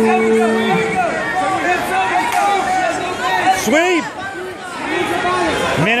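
Crowd chatter: many voices talking and calling out at once, with a steady pitched tone that stops about a second in.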